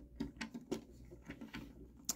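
A few faint clicks and light taps of hard plastic toy parts as small weapon accessories are unpegged and pulled off a Transformers Siege Optimus Prime figure combined with Cog.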